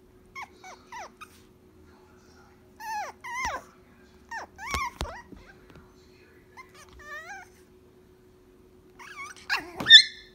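A small puppy giving short, high-pitched yips and whines while playing, in several clusters with the loudest near the end.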